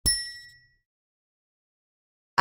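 A single bright metallic ding, a logo-reveal sound effect, struck once. It rings with a few high, clear tones and dies away within about half a second.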